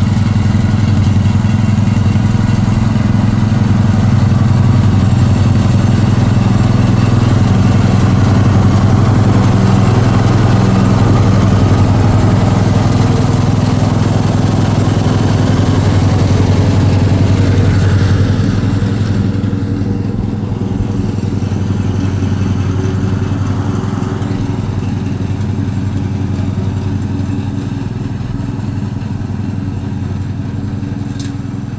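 Lawn mower engine running steadily. About 18 seconds in it becomes somewhat quieter and duller.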